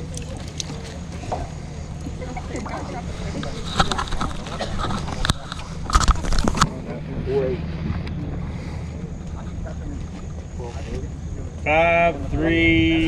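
Background voices over a steady low hum, with a few sharp knocks or splashes about five to six seconds in.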